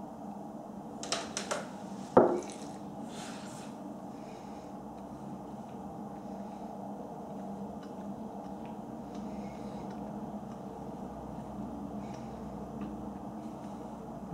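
A short sip from a whisky glass, then a single knock as the glass is set down on a wooden table about two seconds in. After that only a steady low room hum with a few faint mouth sounds while the whisky is held on the palate.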